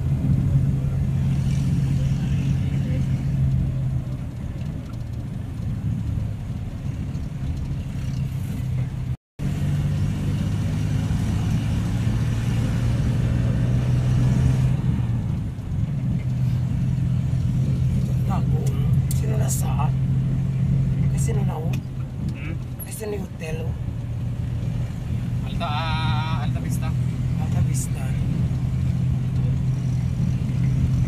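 Car engine and road noise heard from inside the cabin while driving, a steady low hum. The sound cuts out completely for a moment about nine seconds in, and short clicks and a wavering tone come in near the end.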